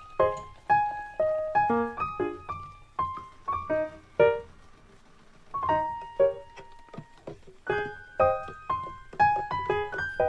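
Background piano music: single notes and small chords struck one after another, each dying away, with a short lull about five seconds in.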